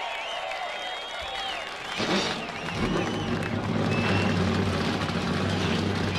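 Crowd whistling and cheering, then about two seconds in the IROC race cars' V8 engines fire up together and settle into a steady, low idling rumble at the start-your-engines command.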